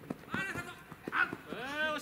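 Players' voices shouting and calling across a ballfield, ending in one long drawn-out call, with a few short sharp knocks in between.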